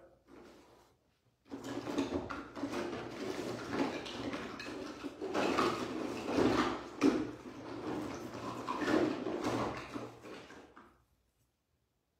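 Small plastic paint pots knocking and scraping against one another for about nine seconds as someone rummages through them for a particular colour.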